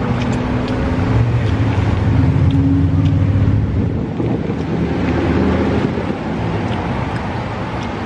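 A motor vehicle engine running close by: a steady low hum that eases off somewhat in the second half, with wind on the microphone.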